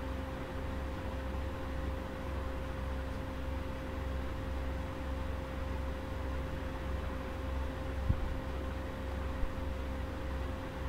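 Steady low hum and light hiss of background room or recording noise, with a faint constant tone. A single short click comes about eight seconds in.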